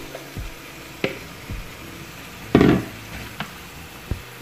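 Vegetables and broth sizzling in a pan while rice noodles are stirred in with a wooden spatula, giving a few light knocks and one louder scrape about two and a half seconds in.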